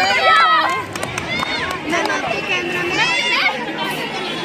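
Several children's voices talking and calling out at once, an excited crowd babble.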